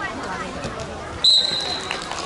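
A sports whistle blown once, a single steady shrill note lasting under a second, starting a little past halfway through.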